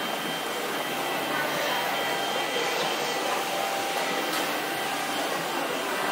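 Indoor market hall ambience: a steady wash of echoing background noise with the murmur of shoppers' voices and a faint, steady high tone.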